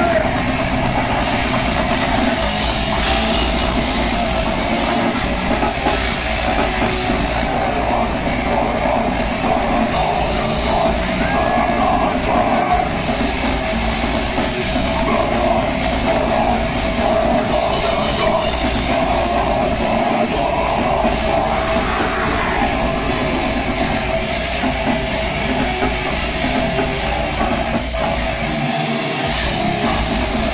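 Death metal band playing live and loud: distorted electric guitar and a full drum kit going without a break.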